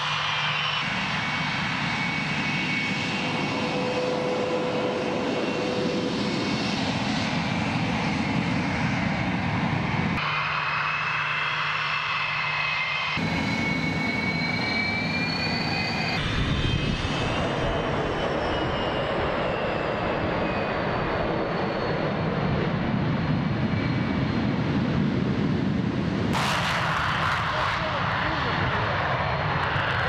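Sukhoi Su-35 fighter jet engines running as the jets taxi and take off, a steady high turbine whine over a low rumble that changes abruptly between shots. In the last few seconds the noise grows fuller and louder as a jet climbs away.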